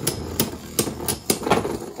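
Two Beyblade Burst spinning tops, Astral Spriggan and Golden Dynamite Belial, clashing in a plastic stadium: repeated sharp clacks, several a second, as they collide while spinning.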